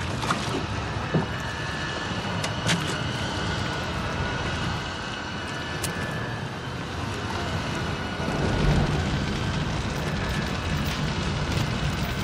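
Gasoline catching fire around a wooden rowboat: a low whoosh swells up about eight and a half seconds in as the fuel ignites, over steady background noise. Before it come a few sharp knocks and clinks from the gas can and chains.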